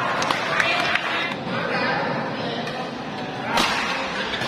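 Badminton doubles rally: rackets striking the shuttlecock several times in quick exchanges, the loudest smack about three and a half seconds in, over the steady chatter of a large crowd.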